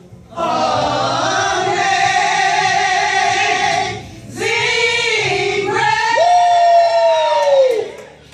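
A woman singing unaccompanied in two long phrases. The second ends on a long held note that slides down near the end.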